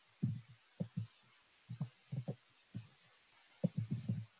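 About a dozen soft, irregular low knocks in small clusters, from a computer mouse and desk being handled, heard over a video-call microphone.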